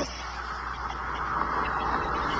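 A Koenigsegg CCR with a supercharged V8 that has just driven past, now out of sight: a steady rushing of engine and tyre noise over a low rumble, with no clear engine note.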